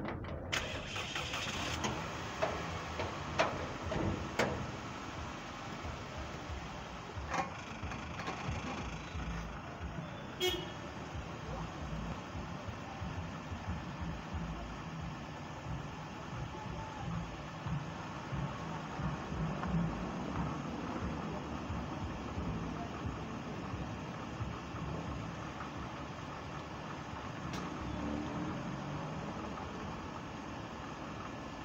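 Car engine running in gear, spinning a jacked-up front wheel, with a few sharp clicks in the first ten seconds. The wheel makes a noise that should be silent, which the owner takes as a sign of a worn wheel bearing.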